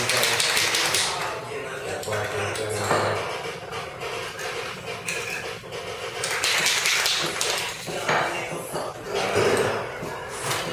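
Aerosol spray paint can being shaken, its mixing ball rattling and clinking inside the metal can in several bouts.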